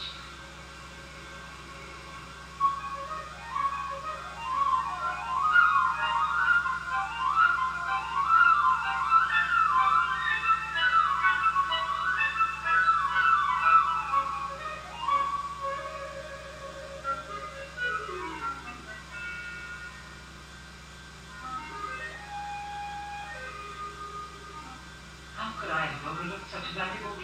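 Music from an animated film's 16mm soundtrack: quick runs of notes sweeping up and down, starting about three seconds in and thinning out after about fifteen seconds to a few sparse held notes, over a steady low hum.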